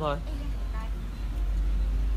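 A steady low rumble, with a woman's single short word at the start and a faint voice just under a second in.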